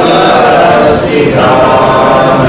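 A group of voices chanting a devotional prayer in unison, on long held notes, with a brief breath-break about a second in.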